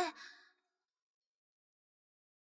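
A voice finishing a spoken syllable and trailing off in a fading breath, then dead silence for the remaining second and a half.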